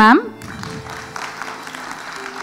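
Applause from a group of people, an even patter at moderate level, with faint background music underneath. A woman's voice on a microphone finishes a word just at the start.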